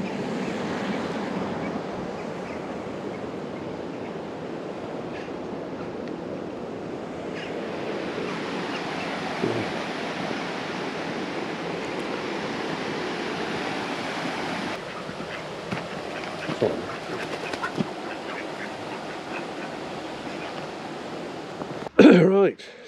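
Steady rush of river water flowing past a mill, with a few short sounds over it around ten and seventeen seconds in.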